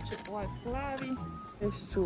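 Loud music cuts off at the start, then quiet shop ambience with short faint voices and a faint steady tone.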